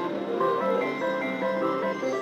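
Gold Maker video slot machine playing its electronic chiming jingle: a run of short, stepping notes as a free-game spin settles and a win is credited.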